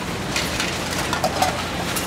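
Steady mechanical noise of a recycling plant's sorting-line machinery and conveyor belts running.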